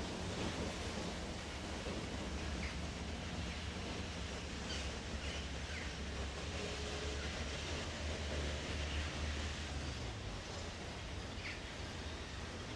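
Faint outdoor ambience: a steady low rumble with a few faint, brief bird chirps.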